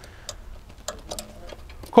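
A few light, scattered clicks and ticks of hands handling metal hitch hardware on a caravan coupling, over a low steady background rumble.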